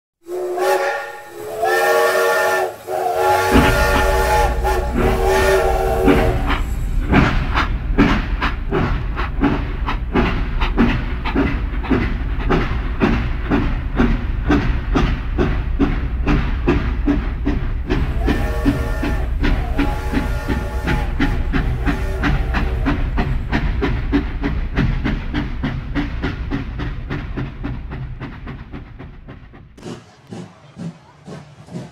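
Steam locomotive sounding its whistle, several notes at once, in three blasts, then chuffing as it gets under way, the exhaust beats coming faster and faster. The whistle blows again partway through, and the chuffing fades away near the end.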